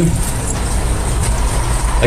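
A steady, low rumble of background noise with a fainter hiss above it.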